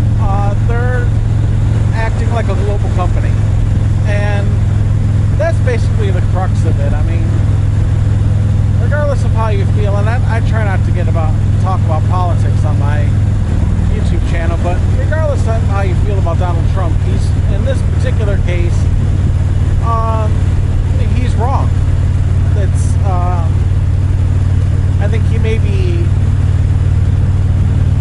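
Harley-Davidson touring motorcycle's V-twin engine droning steadily at highway cruising speed, its note shifting slightly about halfway through. A man's voice talks over it on and off.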